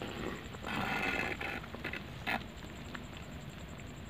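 A metal spoon stirring and scraping against the inside of a clay pot of curry. There is a rasping scrape about a second in, then a short sharp knock against the pot.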